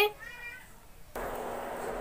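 The tail of a woman's voice fades out, then about a second in a steady hiss starts abruptly and holds.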